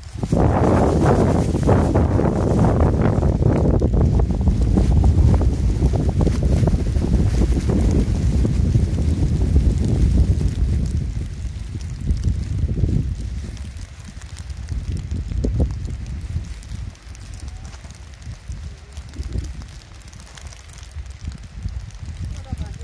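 Wind gusting against the microphone as a loud, low, buffeting rumble, strongest over the first ten seconds or so and then easing into weaker, uneven gusts.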